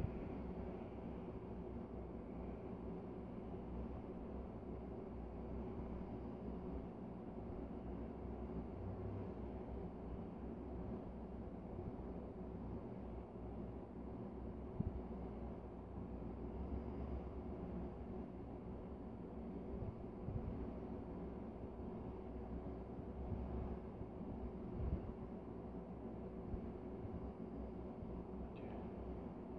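Faint, steady low rumble with a constant hum, with a couple of small clicks about halfway through and near the end.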